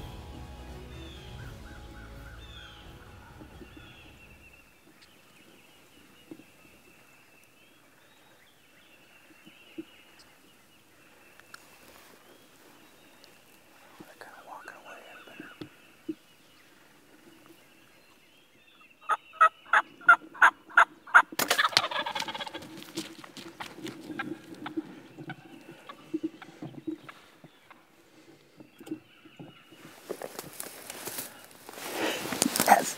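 A wild turkey gobbler gives a loud, rapid rattling gobble about two-thirds of the way through, followed at once by a short burst of noise. Music fades out in the first few seconds, and faint bird calls run underneath.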